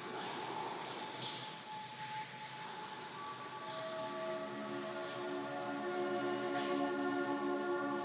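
Soft, slow ambient background music of long held tones, with new notes layering in and the sound gradually swelling.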